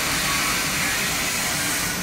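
Steady hiss of factory background noise.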